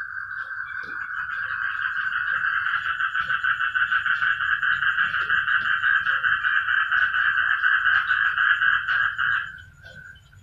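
Frogs calling in a loud, continuous, rapidly pulsing trill chorus that grows louder over the first few seconds and then stops suddenly near the end.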